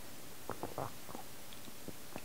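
Quiet room tone with a few faint, short clicks: a cluster about half a second in and a couple more near the end.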